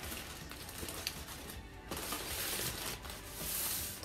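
Sheet of aluminium foil crinkling as gloved hands crumple and ball it up. The crinkling is loudest in the second half, over background music.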